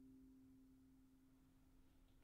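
The final notes of a Steve Lawrie-built steelpan, struck with mallets, ringing on and slowly dying away to a faint hum. Two low pan notes are left sounding together.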